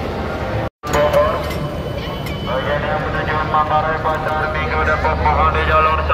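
Indistinct chatter of a crowd of people walking through a busy station concourse, with a brief gap about a second in and a low steady hum joining in the second half.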